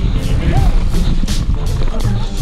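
Wind buffeting a helmet-mounted camera's microphone and a mountain bike rattling over a rough dirt trail at speed, with music playing underneath.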